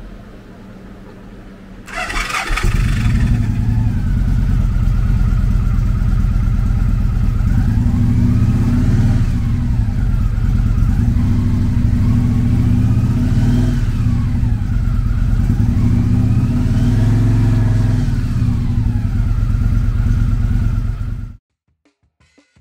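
A 2013 Victory Hammer 8-Ball's 106-cubic-inch V-twin is cranked over and catches about two seconds in. It then idles with a steady, lumpy beat and is blipped three times, the pitch rising and falling each time, before the sound cuts off abruptly near the end.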